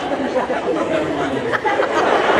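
Indistinct chatter of several voices talking over one another in a large hall, growing louder toward the end.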